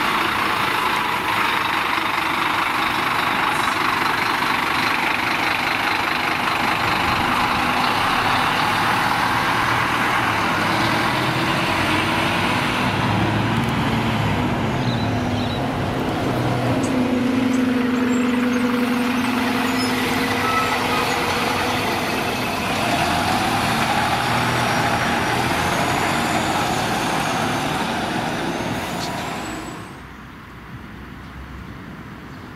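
A city bus's engine running as the bus drives off close by, a steady drone with a held humming note a little past halfway. The sound drops away near the end.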